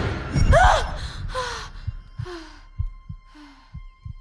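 A young girl's loud startled gasp, then quick, frightened breaths. Under them, heartbeat thuds about twice a second and a faint high ringing tone, as in film sound design for shock.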